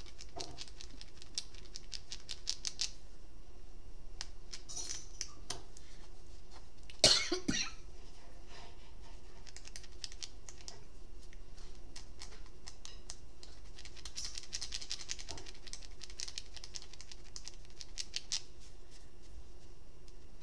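Light rustling and rapid clicking from handling the cloth doll and its fabric. About seven seconds in comes one loud cough in three quick bursts.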